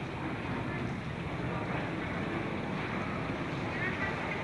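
Flash-flood water rushing along a flooded street, a steady, even rush of flowing water.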